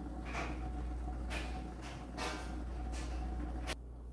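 Coconut milk boiling hard in a lidded pan: a steady bubbling with irregular pops over a constant low hum. It cuts off suddenly near the end.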